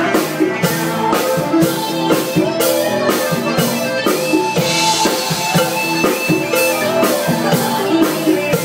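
Live band playing Latin music: a drum kit keeps a steady beat under electric guitar, with no singing in this stretch.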